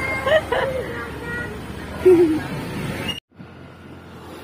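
High-pitched voices calling out over road and vehicle noise, cut off abruptly about three seconds in, then a quieter steady road-noise background.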